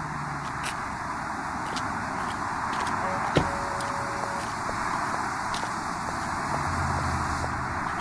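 Steady background noise of city street traffic, with a single sharp knock about three and a half seconds in.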